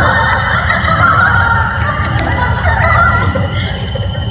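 Instrumental passage of an electronic ambient/trip-hop track: a steady low bass layer under a dense, wavering mid-range texture, easing off a little in the second half.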